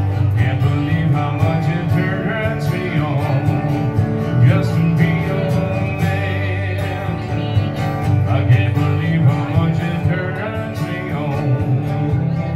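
Acoustic guitar playing a country song live, with a man's singing voice over parts of it.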